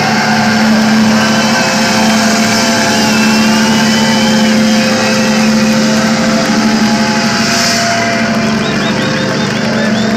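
Electric guitar feedback and amplifier drone held after the band stops playing, with a steady low hum and a higher squeal that wavers in pitch above it.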